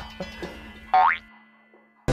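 A cartoon-style 'boing' sound effect: a quick rising glide about a second in, over faint background music that fades out near the end.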